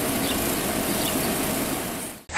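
Steady outdoor background noise picked up by a police body camera's microphone beside a patrol car: an even hiss over a low rumble, fading out near the end.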